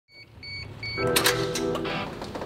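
Three short, high electronic beeps in quick succession, then background music with sustained chords starting about a second in.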